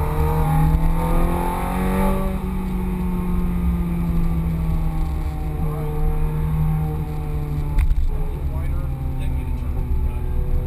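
Ferrari F430 Scuderia's V8 heard from inside the cabin at speed, its pitch rising over the first two seconds, then easing down and holding. There is a sharp knock about eight seconds in, after which the pitch climbs again.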